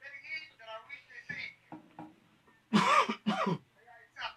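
Speech in a small studio, then two loud, short vocal bursts close on the microphone about three seconds in, like a cough or throat clearing.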